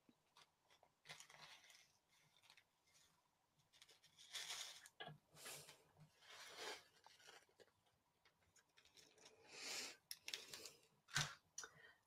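Faint crinkling and rustling of a small clear plastic bag of seed beads being handled and opened, in short scattered bursts, with a sharp click shortly before the end.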